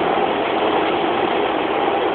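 Steady running noise of a Docklands Light Railway train, an even hum with no breaks or distinct events.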